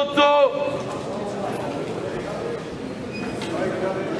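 Sports-hall ambience with faint murmuring voices. A brief loud, high pitched cry or squeak ends about half a second in.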